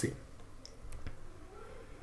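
A few faint, brief clicks over quiet room tone, the clearest about half a second and a second in, right after the narration stops.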